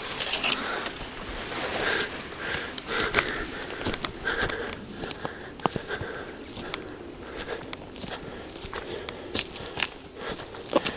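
Footsteps through dry scrub and undergrowth: brushing past branches and grass, with twigs and leaf litter crackling and snapping underfoot in many short, irregular clicks.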